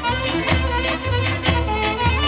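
Live instrumental Pontic Greek dance music: clarinet and keyboards carrying the melody over a daouli drum beating about twice a second.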